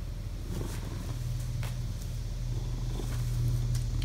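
A ginger Korean shorthair cat purring steadily close to the microphone, a low continuous rumble, with a few faint clicks.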